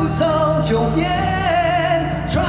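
A male vocalist singing a pop-rock ballad live over a band's backing. The sung phrase climbs and settles into a long held note with vibrato.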